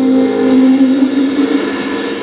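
Live band music: one long held note that fades out about a second and a half in.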